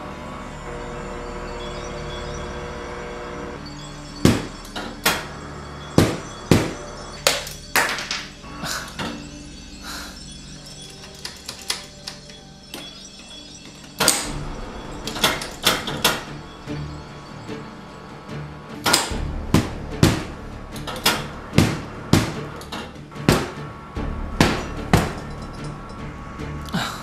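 Irregular series of sharp knocks and clinks at a refrigerator's ice dispenser with a glass held under it, starting about four seconds in and thinning out for a few seconds in the middle, over background music.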